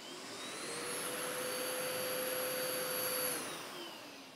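Festool CTMC SYS cordless dust extractor's 36-volt turbine starting up when the button on its Bluetooth remote is pressed. Its whine rises in pitch, runs steadily for about two seconds, then winds down near the end as the motor shuts off.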